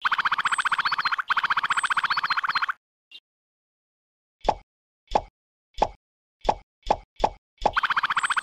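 Added cartoon-style pop sound effects: about eight short, sharp plops, coming faster toward the end, one for each miniature brick that pops into place. Before them comes a rapid buzzing rattle effect lasting about two and a half seconds, which starts again just before the end.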